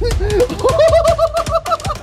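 A boy laughing in a quick run of short, high giggles, about ten a second from half a second in, with a few sharp clicks among them.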